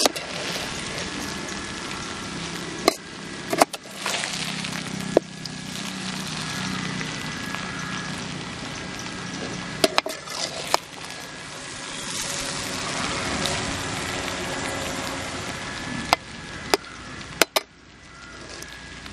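A perforated steel ladle stirs and tosses cooked rice in a large metal pot: a steady scraping rustle of the grains, broken by about eight sharp clinks where the ladle strikes the pot's side.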